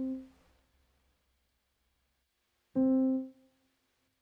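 Sampled felt piano (Native Instruments Noire Felt) playing single short notes: the tail of one note at the start, then one note struck about three seconds in that dies away within about half a second.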